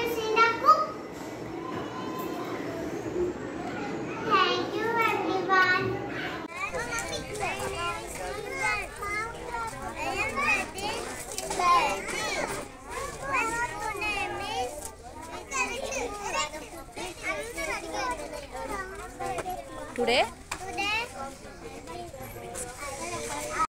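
Young children's voices: one child speaking at first, then after a sudden change many children chattering over one another.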